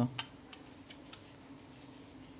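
A few light clicks as a replacement glass back cover for an iPhone 11 Pro Max is handled on the workbench. The sharpest click comes just after the start and fainter ticks follow, over a faint steady hum.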